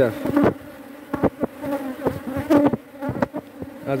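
Honeybees buzzing around an open hive: a steady hum of many bees that swells at moments, with a few sharp clicks.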